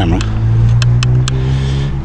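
A steady low engine drone, with a few short knocks and clicks from the camera being handled and moved.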